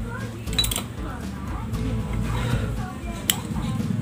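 Faint background speech over a steady low hum, with two sharp clicks, one about half a second in and one near the end, as small electronic parts and a solder reel are handled.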